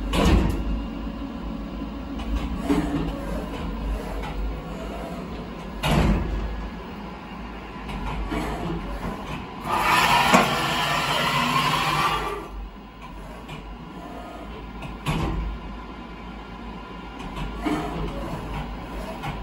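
Fadal VMC 15 CNC vertical mill running a Renishaw probing cycle: axis motors whirring as the machine moves the probe between touch points, with a louder whirring table move of about two and a half seconds in the middle. A few short knocks come at the starts and stops of the moves.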